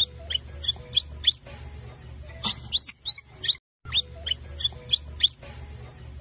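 Birds chirping: short, high, rising chirps about three times a second over a low hum, with a brief break a little past halfway.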